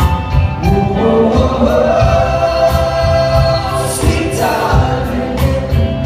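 Live band playing with sung vocals, heard from within the concert crowd: singing held on long notes over drums and keyboards, with the voices rising about a second in.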